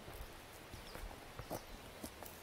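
Footsteps of rubber boots going down wooden steps set into a dirt path: a few faint, uneven thuds.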